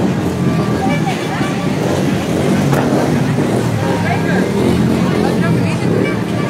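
Street crowd chatter over a steady low rumble from a vehicle engine running nearby.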